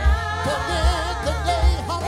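Live gospel song: a male lead singer holds wavering notes with vibrato over a church choir and band accompaniment, with a steady low beat about twice a second.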